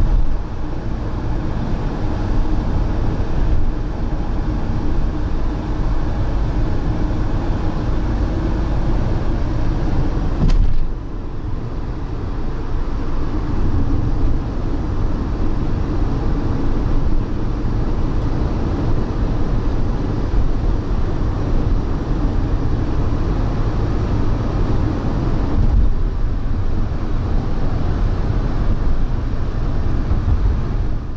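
Steady engine and tyre-on-road drone heard inside a vehicle's cab at motorway speed, with one short knock about ten seconds in.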